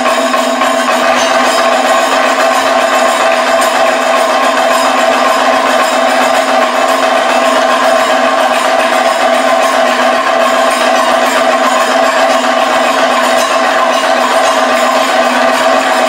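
Kathakali percussion ensemble: chenda and maddalam drums played loudly and continuously, over steady ringing tones.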